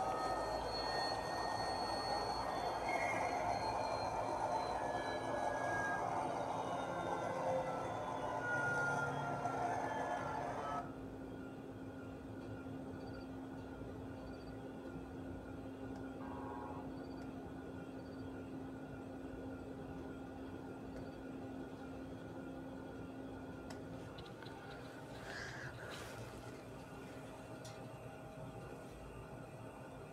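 A helicopter video's soundtrack heard through the room: engine and rotor noise with a slowly falling whine, cutting off suddenly about eleven seconds in. After that only a steady low hum remains.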